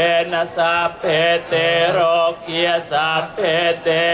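Buddhist chanting in Pali, voices reciting verses in a steady sing-song cadence of about two syllables a second on a few repeated pitches.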